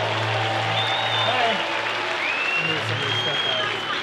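A large crowd applauding a guest's introduction, a steady clapping haze with a few high whistle-like tones above it.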